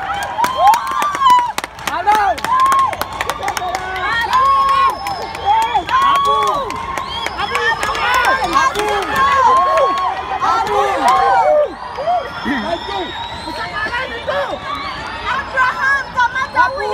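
A few people close by shouting and cheering loudly, with excited yells rising and falling one after another, and sharp claps in the first few seconds.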